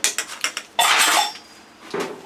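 Metal spoon clinking and scraping against a stainless steel mixing bowl while stirring soft mashed sweet potato. A few quick clinks come first, then a longer, loud scrape about a second in.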